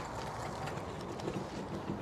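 Steady, low outdoor background rumble with no distinct event in it.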